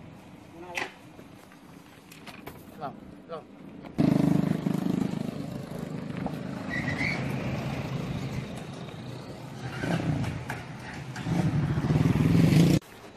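Motor vehicle engine running steadily, with people talking in the background. The first few seconds are quieter, with a few light knocks, and the engine noise comes in suddenly about four seconds in.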